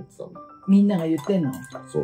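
Clinks of glass and tableware at a dinner table, with short ringing tones, under voices and light background music.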